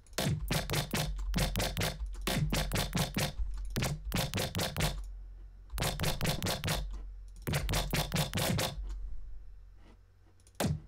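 Rapid runs of clicks from a computer keyboard and mouse being worked, in bursts of several clicks a second with short pauses between. A low steady hum runs underneath.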